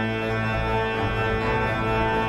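Sampled pipe organ of Düren played through Hauptwerk: slow, sustained chords over a deep pedal bass, the notes held steady with a change of chord now and then.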